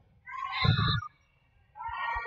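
Athletic shoes squeaking on a hardwood gym floor during a volleyball rally, short high squeals with a thud about half a second in, then more squeaks near the end.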